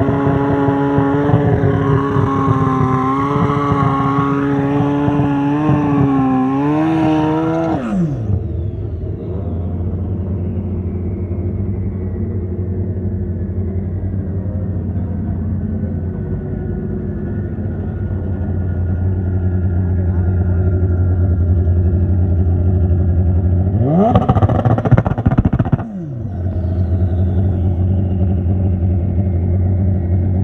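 Honda Pro Street drag bike engine held at high revs through a burnout on its street tire, rising briefly and then dropping sharply to a steady idle about eight seconds in. About 24 s in, an engine revs up sharply for about two seconds and cuts back, and the idle carries on.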